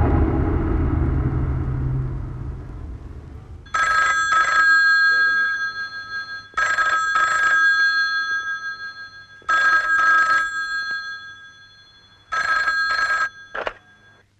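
A desk telephone's bell ringing four times, about three seconds apart, each ring a short double burst; the fourth ring is cut off short and a click follows as the receiver is picked up. A low rumble fades away over the first two seconds before the first ring.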